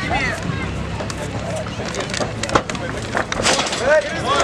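Shouting voices from the corners and onlookers over a cage fight, with several sharp slaps of strikes landing, the loudest about two and a half seconds in.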